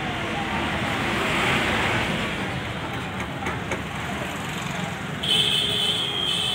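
Street traffic noise, swelling as a vehicle passes about a second and a half in. Near the end a steady, high-pitched beep sets in.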